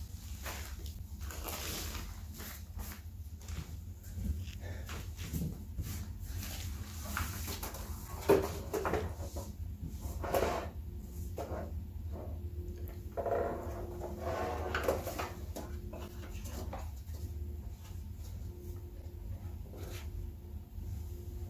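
Plastic-foam wrapping rustling and crinkling as an AV receiver is unwrapped and handled, with scattered knocks and taps; the sharpest knock comes about eight seconds in. A steady low hum runs underneath.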